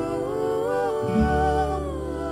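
Slow background music under end credits: a held, gently gliding melody line over sustained notes, with a low bass note coming in about a second in.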